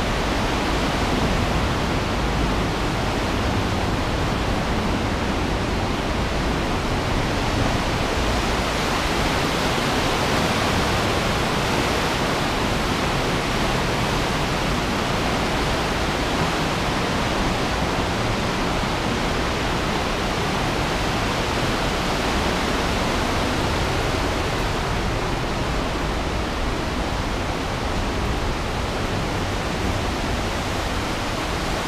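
Steady rush of the Aare river's fast water through the narrow limestone gorge, an even roar that swells slightly about midway.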